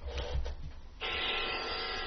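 A pause in the speech with faint background noise. About a second in, a steady hiss with a faint hum comes up and holds.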